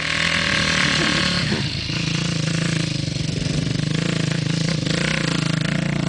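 Yamaha 450 four-stroke single-cylinder dirt bike engine, opened up briefly in the first couple of seconds, then running at steady low revs close by.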